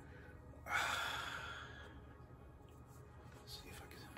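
A man's long sigh, a breathy exhale that starts suddenly about a second in and fades away over a second or so, followed by faint handling ticks from a cardboard CD case.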